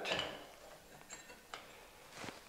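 Faint light ticks of small metal hardware being handled, with two small clicks about a second and a second and a half in, as a metal capacitor plate is fitted against the antenna loop.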